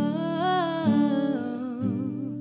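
A woman humming a wordless melody that rises and then falls, wavering near the end, over acoustic guitar chords strummed about once a second.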